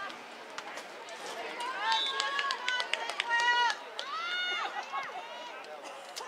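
A run of high-pitched shouted calls and yells from players or spectators, some held and arching in pitch, between about one and a half and five seconds in, with scattered light clicks in the background.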